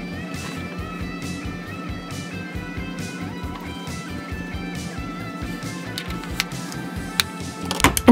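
Instrumental background music, a melody of stepping notes held at an even level, with a few light clicks near the end.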